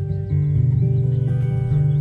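A guitar played solo: a melody of plucked notes ringing over sustained low notes, changing every half second or so.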